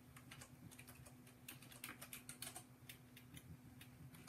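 Faint typing on a computer keyboard: light, irregular key clicks over a low steady hum.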